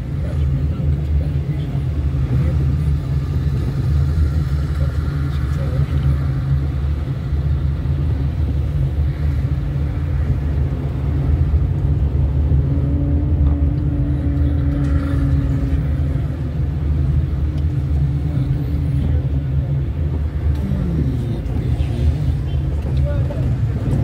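A car driving slowly in city traffic: a steady low engine and road rumble.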